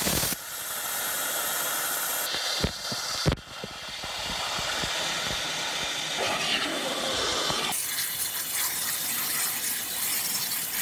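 A 60,000 psi waterjet cutter's jet hissing steadily as it pierces thick layered bulletproof glass, with a few sharp cracks about three seconds in.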